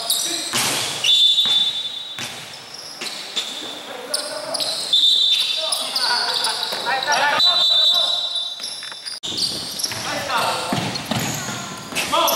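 Basketball being bounced on a hardwood gym court during a game, with players' shouts and several brief high squeals.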